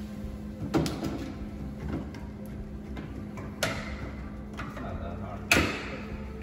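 Hard plastic knocks and clicks as a refrigerator water filter cartridge is pushed into its housing in the fridge's bottom grille: three sharp knocks, the loudest near the end, over a steady low hum.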